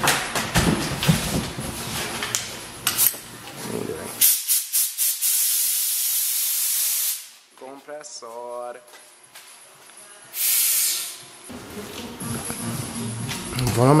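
Compressed-air blow gun hissing in two blasts: a steady one of about three seconds, then a shorter one of about a second near the end. It is being used to blow water out of the car.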